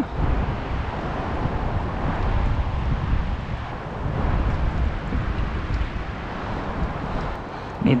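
Wind blowing over and buffeting an unshielded GoPro action-camera microphone: a constant rumbling rush that swells and eases with the gusts, louder around the middle.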